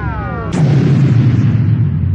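Title-card sound effect: a synthesized sweep falling in pitch that ends about half a second in with a sudden deep boom, its low rumble held and starting to fade.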